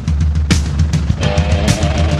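Early-1980s rock track played over drum kit and bass guitar. A held guitar line comes in about a second in.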